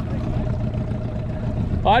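Small outboard motor on an aluminium tinny running steadily at low trolling speed: a low drone with a faint steady whine above it.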